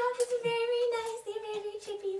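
A young female voice singing one long held note that drops slightly in pitch about halfway through.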